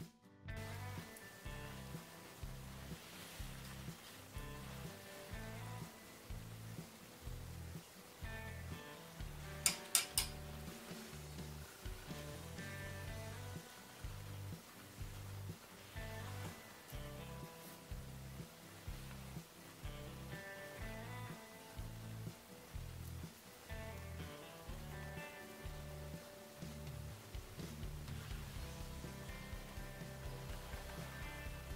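Background instrumental music with a steady repeating bass beat. Two sharp clicks about ten seconds in.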